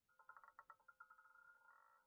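Faint rapid ticking of a roulette ball bouncing across the wheel's pocket separators, turning into a faint steady ringing about a second in as the ball settles into a pocket.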